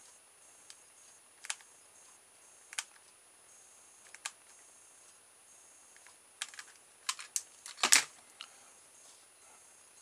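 Scattered light clicks and taps from hands working a hot glue gun against a cardboard box, irregular and a second or more apart, with the loudest cluster about eight seconds in.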